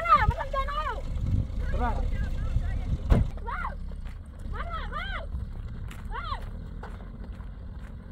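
Raised voices shouting in short cries that rise and fall in pitch, over a steady low rumble, with one sharp click about three seconds in.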